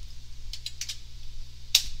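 Computer keyboard keystrokes: a few scattered key clicks, with one sharper, louder click near the end, over a low steady hum.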